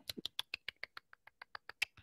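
A quick run of light, evenly spaced clicks, about seven a second, with a louder click near the end.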